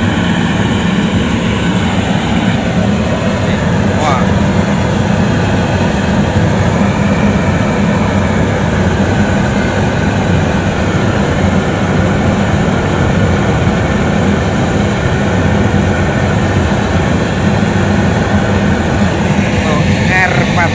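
Riello R40 G10 oil burner firing: the flame and its blower fan make a loud, steady rushing noise that does not change. This is the repaired burner holding a stable flame instead of cutting out.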